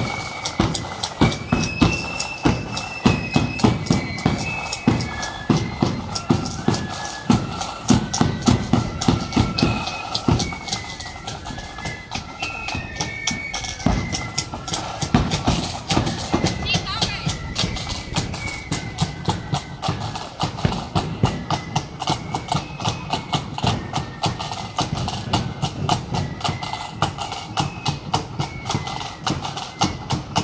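Marching flute band playing a tune: flutes carry a stepping melody over a steady drum beat, about two beats a second.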